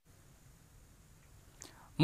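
Near silence: faint room tone with a brief soft sound near the end.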